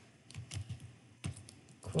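Computer keyboard keys typed in a short, uneven run of separate keystrokes.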